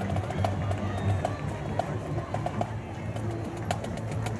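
Marching band playing on the march, sustained low brass notes under a repeated drum pattern.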